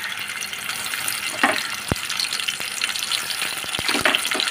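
Dried prawns frying in hot oil in an aluminium pan: a steady sizzle with scattered crackles and a few sharp pops.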